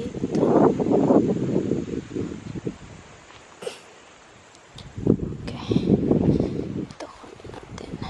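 Wind buffeting the camera microphone in two gusty spells, one at the start and one more about five seconds in, with light rustling and a few clicks from hands working among tomato plants.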